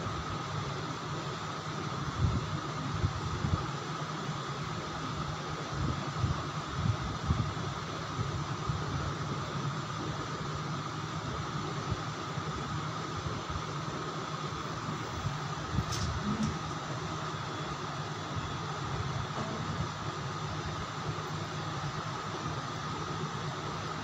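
Steady background hiss and hum, like a fan or machine running, with a few low bumps scattered through the first several seconds.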